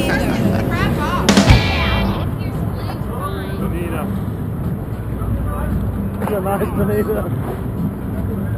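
People's voices and shouts aboard a sportfishing boat while a hooked fish is fought, over boat engine and wind noise, with one loud sharp sound about a second and a half in.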